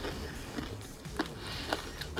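Quiet chewing of a mouthful of pizza, with two faint mouth clicks a little after a second in.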